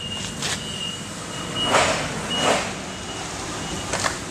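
A vehicle's reversing alarm beeping in a high tone, with two short rushes of hiss near the middle.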